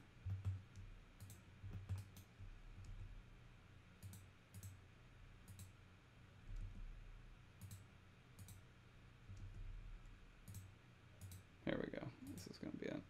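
Faint, scattered clicks of a computer mouse, about a dozen at irregular intervals, over a low steady hum.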